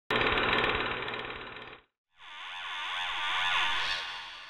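Logo-intro sound effects: a loud, rapid rattling clatter that cuts off after under two seconds, then, after a brief gap, a whoosh that swells with pitch sweeping up and down and begins to fade near the end.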